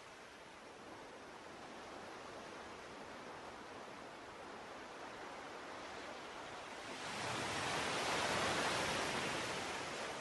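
Ocean surf: a steady wash of waves that grows slowly, with one wave swelling loudly about seven seconds in and easing off near the end.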